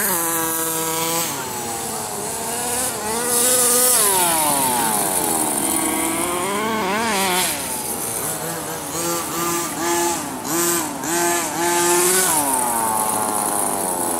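Small two-stroke petrol engine of a 1/5-scale HPI Baja RC truck revving up and down as it is driven, the pitch dropping and climbing repeatedly. Between about 9 and 12 seconds in come a series of short, quick throttle blips.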